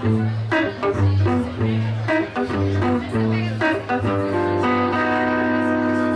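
Solid-body electric guitar playing a line of short picked notes over a repeating bass note, then letting a chord ring out about four and a half seconds in.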